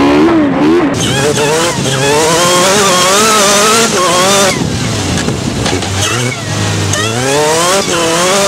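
Race car engine heard onboard at full throttle on a dirt autocross track: the engine note climbs in pitch and drops back at each gear change, over a steady hiss. About a second in, the sound cuts abruptly from one car to another.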